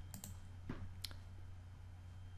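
Two computer mouse clicks about a second apart, over a faint steady low hum.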